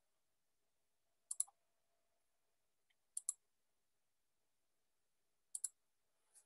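Three pairs of sharp computer-mouse clicks, each a quick press-and-release about two seconds apart, in near silence.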